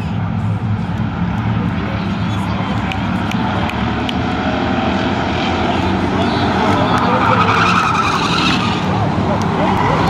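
A pack of short-track stock cars running around the oval, their engines droning together, growing louder about seven seconds in as the pack comes past.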